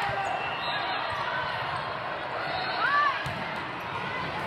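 Volleyballs being hit and bouncing in a large echoing sports hall, with a babble of players' and spectators' voices and a brief shout about three seconds in.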